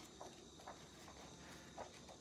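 Faint, scattered soft ticks and rustles of paperback book pages being flipped through by hand.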